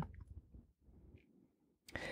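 Near silence in a pause between spoken sentences, with a short soft rush of noise near the end.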